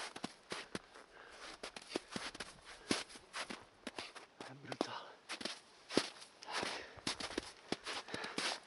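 Footsteps crunching in snow: irregular steps with sharp clicks and scuffs.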